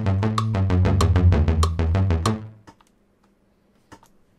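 Teenage Engineering OP-Z sequencer playing back an electronic pattern: quick, even drum clicks over a stepping bass line and synth notes. The pattern stops about two and a half seconds in, and a single faint click follows near the end.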